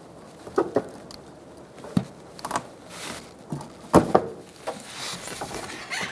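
Plastic clicks and small knocks of a fog light's wiring connector being unlatched and pulled off the lamp: a handful of separate sharp clicks, the sharpest about two and four seconds in.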